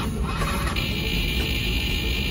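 Background music, with a steady high buzz starting just under a second in as the trike's starter button is pressed. The engine does not start, which is taken as the sign of a flat battery.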